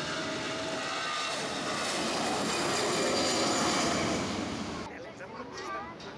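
Twin jet engines of an easyJet Airbus A320-family airliner running at take-off power as it rolls and lifts off: a steady jet noise with a faint whine, growing louder over the first few seconds, then dropping off sharply about five seconds in.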